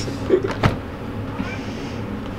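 A short laugh over a steady low hum, with two soft clicks in the first second.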